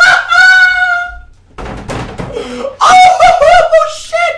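A man screaming and yelling in excitement, wordless and high-pitched: one long held cry, a short break about a second and a half in, then a run of wavering whoops near the end.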